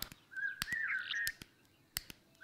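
A songbird calling once: a short wavering, whistled phrase lasting about a second, with a few faint sharp clicks around it.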